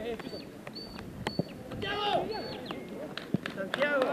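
Players' voices calling out across a football pitch, loudest about halfway through and again near the end, with a few sharp knocks in between.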